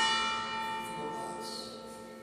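A bell struck once, its several ringing tones slowly fading.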